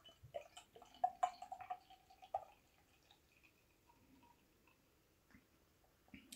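Russian imperial stout glugging out of a glass bottle into a beer glass: a quick run of gurgles over the first two and a half seconds, then a much fainter trickle.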